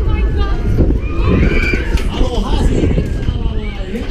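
Riders screaming on a swinging, spinning funfair thrill ride, their voices rising and falling in pitch, over a heavy rush of wind on the microphone.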